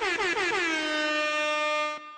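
An air-horn sound effect used as a transition stinger: one bright, brassy horn tone that warbles rapidly in pitch for about the first second, then holds a steady note and cuts off just before the end.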